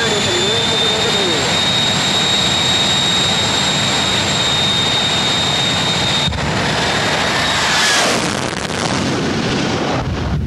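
Two jet dragsters' turbojet engines running loud at the start line, a high steady turbine whine over a heavy roar. About eight seconds in the roar surges as they launch on afterburner, then falls away as they leave.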